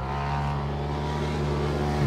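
The small single-cylinder four-stroke engine of a Polaris RZR 170 youth side-by-side, running steadily.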